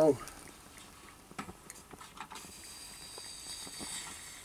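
Vintage Turm-Sport methylated-spirit stove heating up during priming. A few faint ticks come first; then, from about halfway, a steady high hiss with thin whistling tones sets in and grows a little louder as the fuel tube warms and the spirit starts to vaporise at the burner.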